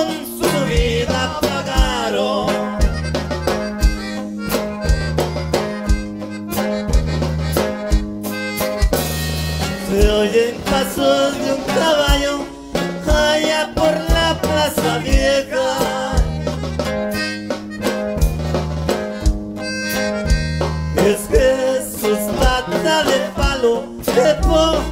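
Norteño band playing an instrumental passage of a corrido: button accordion carrying a wavering melody over bajo sexto strumming and a steady bass beat.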